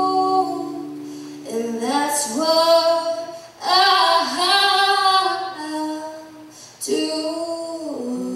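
A female vocalist singing long held notes with vibrato, in three phrases, over instrumental accompaniment.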